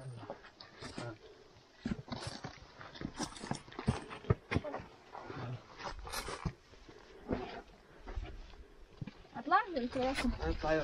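Shoes stepping and scuffing on sandstone rock in irregular short bursts as people scramble up a steep rocky slope, with voices coming in near the end.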